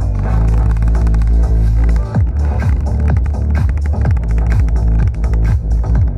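Bass-heavy electronic music played loudly through a Philips NX-series tower speaker, heard close to its woofer, whose cone is moving with large excursion. A deep held bass note gives way about two seconds in to a steady beat of punchy bass hits that drop in pitch.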